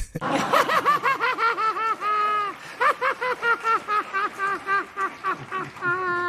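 A man's long, high-pitched fit of laughter in quick rhythmic pulses, about four or five a second, stretched twice into a long strained note, once about two seconds in and again at the end.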